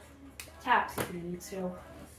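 A woman's voice: a short stretch of speech or vocalising lasting about a second and a half, with a sharp click just before it starts.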